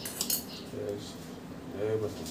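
A few quick, light metallic clinks, such as steel puja utensils touching, near the start, followed by two short low hums about a second apart.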